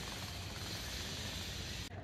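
Steady background hiss of ambient noise with a faint low hum; the higher part of the hiss drops away suddenly just before the end.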